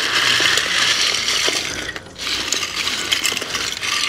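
Clear ice cubes being dumped out in a rush, a dense clatter of many small clinks in two pours with a short break about two seconds in.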